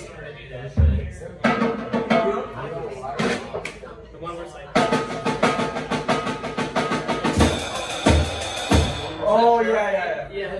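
Drum kit played loosely, not in a tune: a kick drum thump about a second in, scattered snare and tom hits, then from about five seconds in a run of quick, even cymbal and snare strokes with three more kick drum thumps near the end. Voices talk over it.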